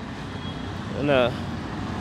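Road traffic sounding as a steady background hum during a pause in speech, with a short spoken syllable about a second in.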